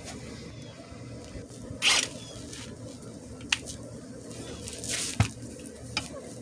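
Handling noise as a cordless impact wrench's socket is brought up and fitted onto a mower blade bolt: a brief swish about two seconds in, a sharp click, then another swish ending in a click about five seconds in. A faint low hum runs underneath. The wrench itself is not running.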